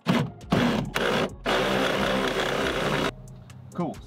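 A power tool on a long socket extension backing off one of the brake booster's 13 mm mounting nuts: a few short bursts, then a steady run of about a second and a half that cuts off suddenly.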